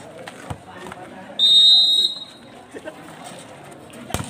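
Referee's whistle, one blast of well under a second about a second and a half in, over faint crowd voices: in volleyball the signal that clears the server to serve the next point.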